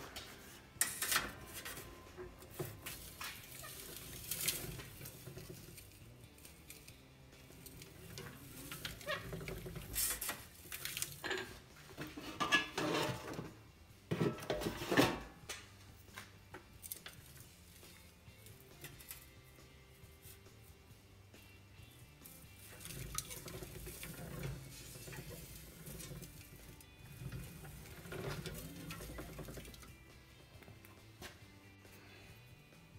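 An 18-gauge steel sheet being handled and fed through a hand-cranked slip roller: irregular metallic clanks, rattles and scraping of thin sheet steel against the steel rolls, loudest in a burst about halfway through, then sparser.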